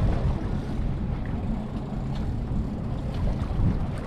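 Steady low rumble of a boat at sea, with wind buffeting the microphone.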